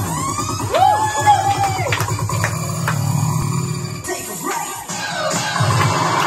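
A karaoke backing track of an upbeat electronic dance song plays through the room speakers. It has a steady bass line, and several synth sweeps rise and fall in pitch during the first couple of seconds.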